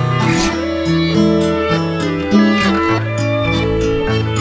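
Instrumental music: a plucked, guitar-like melody moving in steps over held low bass notes.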